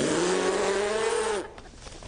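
A man's single long, hoarse bellow, held on one steady low pitch for about a second and a half, a comic noise made with his tongue stuck out.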